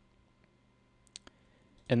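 Computer mouse clicking a few times over a faint low hum: one soft click, then two sharp clicks in quick succession just past the middle. A man's voice starts right at the end.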